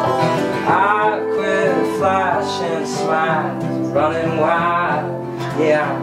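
Acoustic folk trio playing an instrumental passage between sung lines: strummed acoustic guitar under a fiddle playing repeated sliding, arching phrases, with washboard rhythm.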